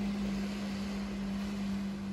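Motorboat engine droning offshore: one steady low hum that wavers slightly in pitch.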